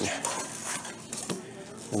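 Paper pages of a ring binder being flipped, with light rustling and a few short clicks.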